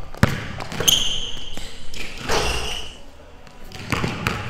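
Basketball dribbled on a hardwood court floor, a string of sharp bounces, with basketball shoes squealing on the wood about a second in and again just past two seconds.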